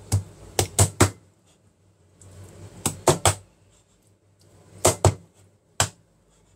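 Chinese cleaver chopping cooked chicken on a plastic cutting board: sharp strikes in quick clusters, about four in the first second, three near the middle, then two and a single one near the end.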